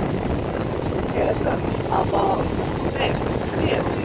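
Steady low road and engine rumble of a moving car, heard from inside the cabin.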